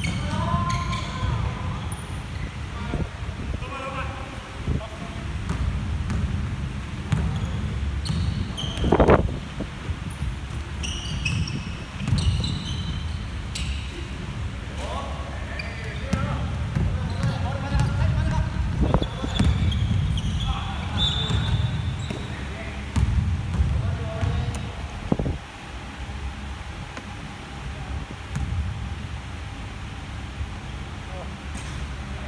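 Basketball being dribbled and bounced on a wooden sports-hall floor during a game, with sneakers squeaking and players calling out. One loud thump about nine seconds in stands out above the rest.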